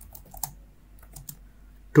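Computer keyboard being typed on: a scattered run of quiet keystrokes, bunched near the start and again about a second in.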